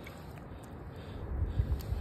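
Hand swishing a muddy bolt about in a shallow puddle: quiet water sloshing that grows louder near the end.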